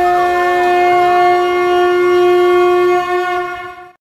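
A wind instrument holds one long steady note. A second, wavering melody line moves above it in the first second, and the note dies away over the last second.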